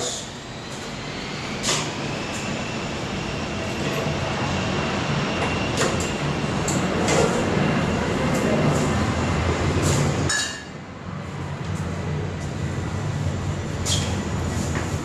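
Beer running under pressure through an automatic bottle filler into a glass bottle, a steady rushing and gurgling flow. It dips briefly about ten seconds in, then carries on.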